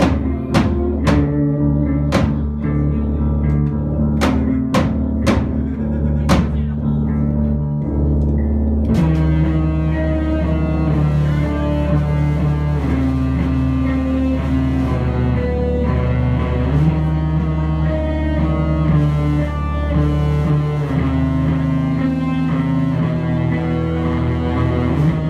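Live band of keyboard, electric guitar and drums playing: held low tones with a few separate sharp drum or cymbal hits, then about nine seconds in the full band comes in with a denser, steady sound.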